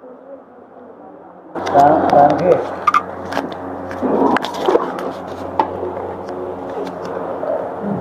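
Quiet room sound at first. Then, from about a second and a half in, indistinct voices in a hall over a steady low hum, with scattered clicks and knocks.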